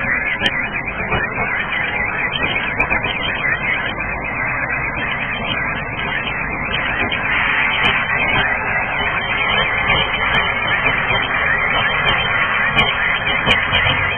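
Fireworks and firecrackers going off across the city in a dense, continuous crackle and popping with no let-up.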